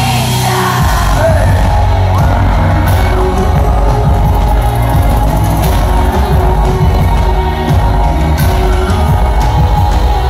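Live pop concert music played loud over the venue PA and recorded on a phone in the crowd, with a singer's voice over it. A heavy bass beat comes in about a second in.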